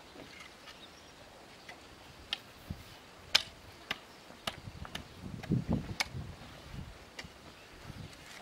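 Metal garden rake dragged through loose, dry soil: scattered sharp clicks as the tines strike stones and clods, the loudest about three seconds in, and a lower scraping rustle of dragged earth from about five to six and a half seconds in.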